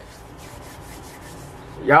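Hands rubbing together, a steady rustling friction of skin on skin.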